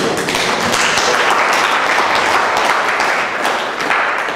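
An audience clapping in applause, a dense steady patter of many hands that starts to die down near the end.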